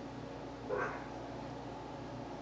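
A single brief pitched vocal sound, about a quarter second long, a little before the middle, over a steady low room hum.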